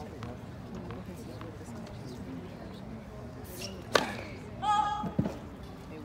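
Spectators chattering, with a sharp tennis-ball impact about four seconds in and a duller low thud about a second later as a ball is bounced on a hard court before a serve. A short high-pitched call comes between the two impacts.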